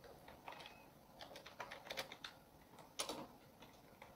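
Computer keyboard being typed on: faint, irregular keystrokes, with one louder keystroke about three seconds in.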